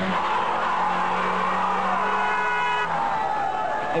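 Cars driving along a busy street, a loud steady noise with sustained tones running through it. A second, higher tone joins for about a second halfway through.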